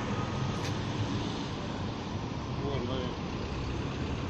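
Steady city road traffic noise, a continuous hum of passing cars, with faint voices about three seconds in.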